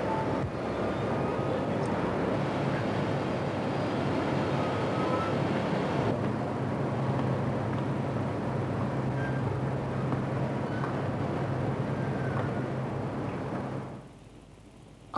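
Steady industrial-plant machinery noise, a dense even din, with a low steady hum joining about six seconds in.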